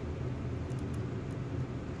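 Steady low machine hum, with a few faint ticks a little under a second in.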